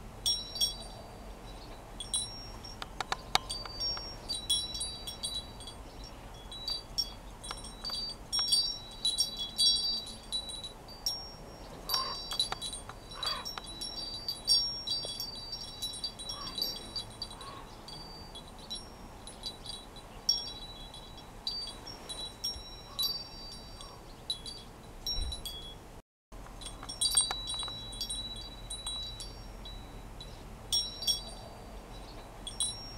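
Small high-pitched chimes ringing irregularly, many short overlapping tinkling notes, cutting out for a moment about four seconds before the end.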